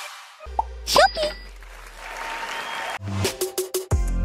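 Edited outro sound effects and music: a low bass drone sets in, a quick pitch-gliding swoosh about a second in, a fading hiss, then music with a steady beat starting near the end.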